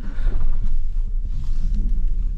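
Off-road 4x4's engine pulling under load at crawling speed, heard from inside the cabin as a deep low rumble that swells at the start, while the vehicle works through an axle-crossing.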